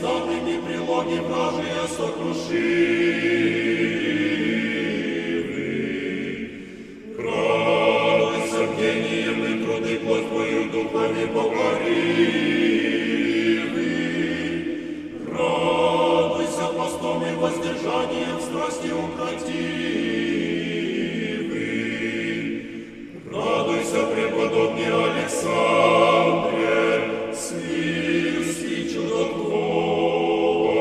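Russian Orthodox church choir singing a slow chant, most likely an akathist hymn, in long phrases. It breaks briefly between phrases about 7, 15 and 23 seconds in.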